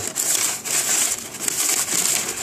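Dry rubbing and rustling handling noise, a fluctuating hiss from the card and fingers shifting close to the microphone.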